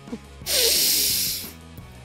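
A man's voice giving a long, loud breathy exhale, like a heavy sigh, lasting about a second, over quiet background music.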